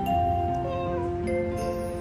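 A cat meowing over soft background music with long held notes.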